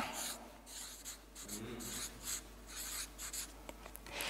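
Felt-tip marker squeaking and scratching across flip-chart paper as a word is written, in a quick series of short strokes.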